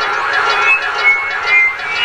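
Drum and bass music from a DJ mix on a pirate radio broadcast, thin in the deep bass here, with a few short high notes over a busy midrange.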